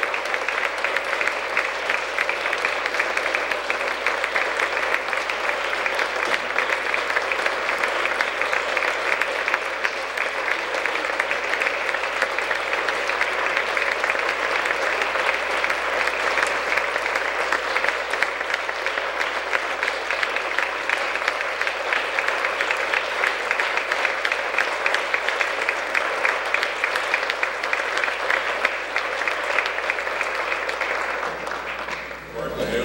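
Large audience applauding: dense, steady clapping from many hands that eases a little near the end.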